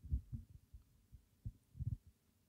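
A run of about six low, dull thumps in two seconds, the loudest just after the start and near the end: handling noise on a phone's microphone while the phone is touched.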